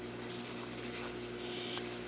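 Faint, soft rustling of fabric being handled as a sewn pocket bag is pushed through the welt opening, over a steady low room hum.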